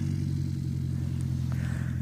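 Light single-engine airplane's piston engine running steadily at low power, heard as an even low hum.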